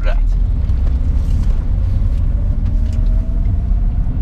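Renault Clio 1.6-litre 8-valve four-cylinder engine heard from inside the cabin, pulling away in first gear: a steady low rumble with a faint whine that rises slowly in pitch as the revs climb.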